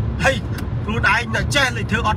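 A man talking inside a car cabin, over the car's steady low rumble.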